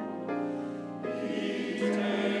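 Church choir singing in parts, holding sustained chords that shift to new notes about a second in.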